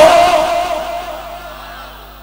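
A man's amplified voice holds out the end of a word in one long, slightly wavering note that fades away over the first second and a half, leaving a faint steady hum from the sound system.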